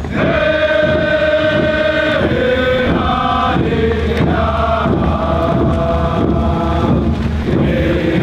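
A group of voices singing a chant in long held notes, the pitch stepping to a new note every second or two.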